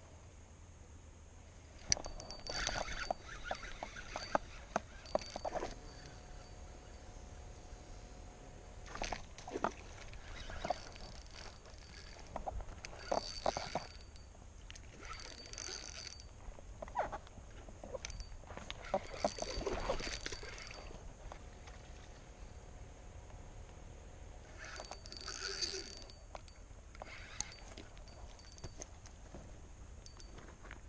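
Spinning reel being cranked in short spurts as a lure is retrieved, a light clicking rattle with a thin gear whine, separated by quieter pauses.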